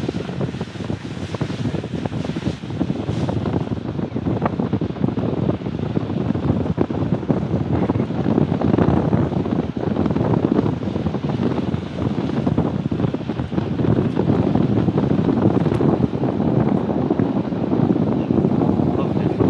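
Wind buffeting the microphone on a motorboat under way, with the boat's engine and water running past the hull underneath; it grows somewhat louder about halfway through.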